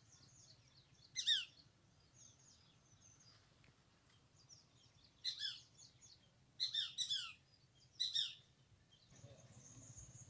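Birds calling from the trees: several loud, high calls that fall quickly in pitch, coming singly and in short groups, with fainter chirps between them.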